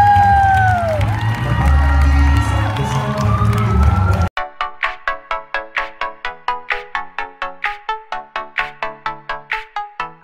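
A crowd cheering over loud, bass-heavy hall music, with one long whoop near the start. About four seconds in it cuts off suddenly and a bright electronic track of quick plucked notes begins, about four notes a second.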